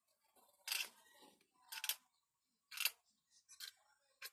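Knife blade shaving a blue PVC pipe fitting, three sharp scraping strokes about a second apart, then a couple of fainter ones near the end.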